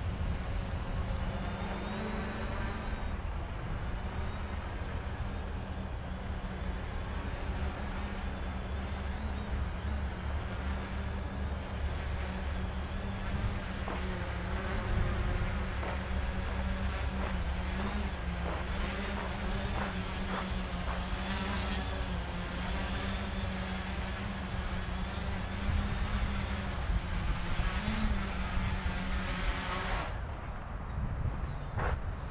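Small electric quadcopter's brushless motors and propellers buzzing steadily, with a high whine, the pitch wavering up and down as the throttle changes. The motor sound drops away right at the end.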